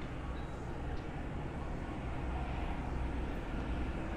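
Steady city-street background noise: a low rumble of distant traffic, growing slightly louder in the second half.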